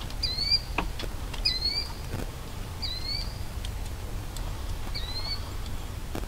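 A bird repeating a short hooked call that dips and then rises in pitch, about once every one to two seconds. A few sharp ticks fall between the calls, over a low steady rumble.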